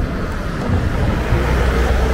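Outdoor street noise with a steady low rumble that strengthens about a third of the way in.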